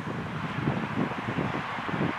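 Wind buffeting the camera microphone, a steady noisy rumble.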